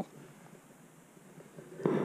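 A pause in a man's speech: only faint, even background noise, with his voice starting again near the end.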